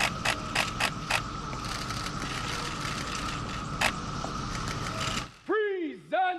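Camera shutters clicking in quick runs, about three or four a second for the first second or so and once more near four seconds, over a steady outdoor hum. Just past five seconds the background drops away and a man's drawn-out voice begins.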